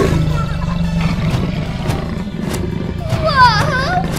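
A low, steady animal growl sound effect, with a wavering high cry near the end.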